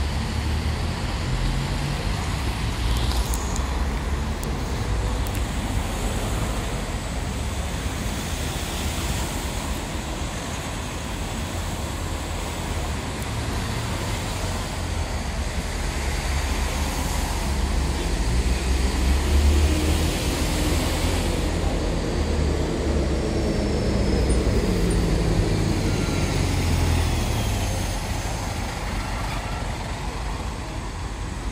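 Heavy diesel engine of a low-loader recovery truck carrying a coach, running steadily among street traffic. It swells about two-thirds of the way through, then drops in pitch over the last few seconds.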